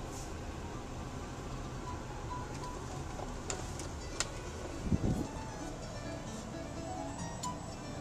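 Low engine and road rumble inside a slowly moving car's cabin, with faint music playing and a low thump about five seconds in.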